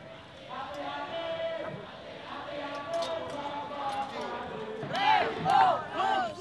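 A crowd of protesters shouting and chanting, with a few loud rising-and-falling shouts near the end.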